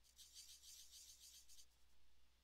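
Faint scratching of a marker nib on paper: a run of quick back-and-forth colouring strokes, about seven a second, that stops a little before the end.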